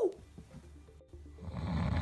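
A long, deep sniff through the nose, rising over about a second in the second half, just after the tail end of a falling shout of "woo" at the start.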